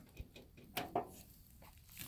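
Near quiet, with a few faint, brief taps and rustles in the first half.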